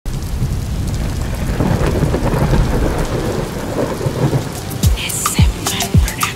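Rain and rolling thunder, a low rumbling wash of noise. About five seconds in, a beat comes in: deep kick drums that drop in pitch, about two a second, with crisp high percussion clicks.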